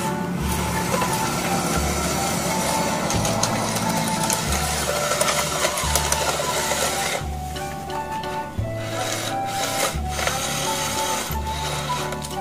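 A toy excavator's small electric drive motors and plastic gears whirring as it crawls on its tracks over stones, under background music.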